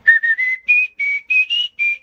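A man whistling a short jingle melody, about eight short notes that mostly climb in pitch.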